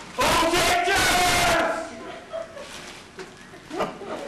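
A person's loud, drawn-out yell lasting about a second and a half, then falling away to quieter sound.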